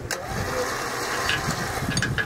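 Electric winch motor switched on with a click, running with a steady whine for about two seconds and stopping near the end.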